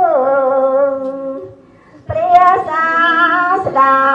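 A single voice chanting or singing in slow, drawn-out melodic lines. It slides down in pitch at the start and holds the note, breaks off for about half a second just before the middle, then comes back with a wavering pitch.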